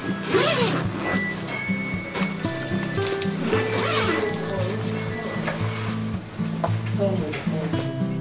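Background music with a steady, stepping bass line, over the zipper of a fabric cat carrier being pulled open, rasping twice.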